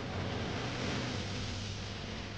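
Steady background noise: an even hiss with a low, constant hum underneath, unchanging throughout.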